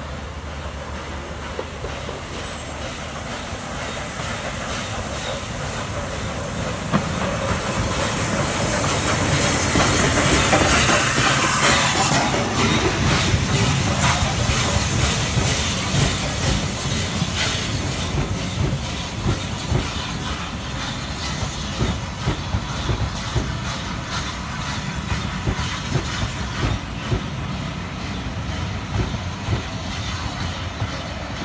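Steam locomotive hauling a train of coaches passes close by. A hiss of steam builds to its loudest about ten seconds in, then the wheels click steadily over the rail joints as the coaches roll past, slowly fading.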